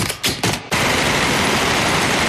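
Trailer sound effect: a few sharp cracks, then a loud, dense, continuous din of noise from about two-thirds of a second in, of the kind heard as rapid gunfire.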